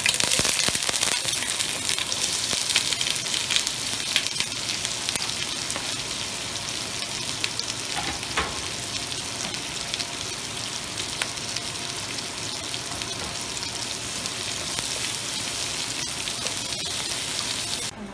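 Sliced red onions sizzling as they fry in hot vegetable oil in a nonstick wok, loudest in the first few seconds and then settling into a steady frying hiss. A few sharp clicks come from the utensils stirring the onions against the pan.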